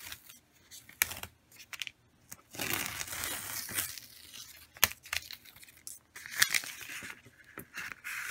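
A cut vinyl stencil being peeled off a painted wooden board: crinkling and tearing in spells, loudest about three seconds in, with a few sharp clicks as the sheet pulls free.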